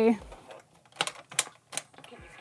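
Three sharp plastic clicks from a 1989 Polly Pocket toy cassette player being handled, spaced less than half a second apart.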